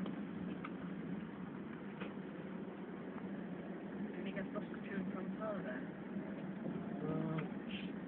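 Steady road and engine hum inside a moving car's cabin, with faint talking in the second half.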